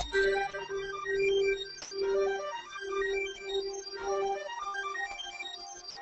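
Electronic dance track in a breakdown: the kick drum stops right at the start, leaving a synth note pulsing in long repeated strokes under a scatter of short, high synth notes.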